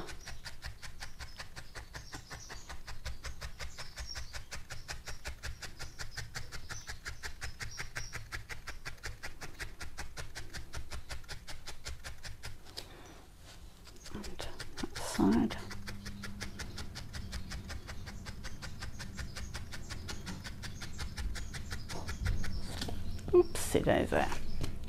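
Felting needle stabbing rapidly and repeatedly into a wool ball on a foam pad, a fast, even series of small clicks.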